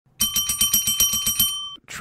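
A bell ringing in a rapid trill, about seven strikes a second, for about a second and a half before it stops.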